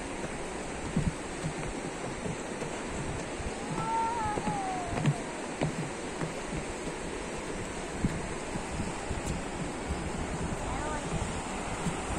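Steady rush of river water pouring over a low weir, with gusts of wind buffeting the microphone.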